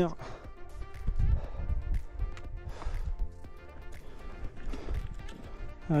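Background music, with irregular low thuds of footsteps on a mountain trail and low wind rumble on the microphone.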